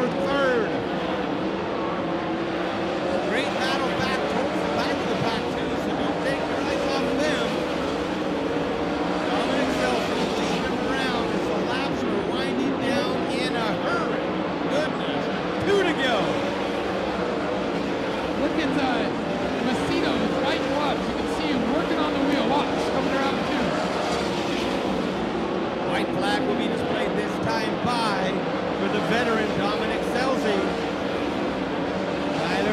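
Several 410 sprint cars' methanol V8 engines running steadily around a dirt oval, heard from trackside, with voices mixed in.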